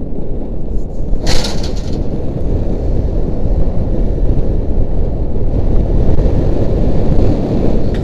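Wind buffeting a helmet camera's microphone high on a tower, a steady low rumble throughout, with a short louder burst of noise about a second in.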